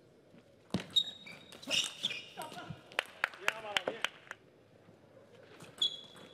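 Table tennis rally: the plastic ball clicks sharply off bats and the table in quick succession, in a denser run of strikes about halfway through. Shoes squeak briefly on the court floor about a second in and again near the end.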